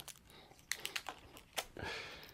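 Faint handling noises at a tennis racket's handle: a run of small clicks and crinkles as fingers pick at and peel plastic wrap, followed by a brief soft rustle near the end.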